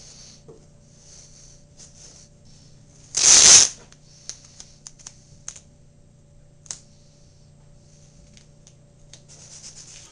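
Metal putty knife scraping dried wood putty on a wooden frame in light scratchy strokes. About three seconds in there is a loud rasping burst of about half a second, followed by scattered small clicks and taps.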